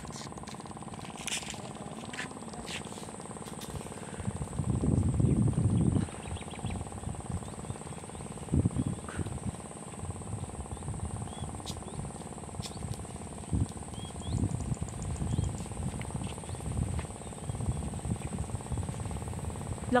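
Strong wind gusting across the microphone in uneven low rumbles, loudest about five seconds in, over a steady high insect drone and a few faint bird chirps.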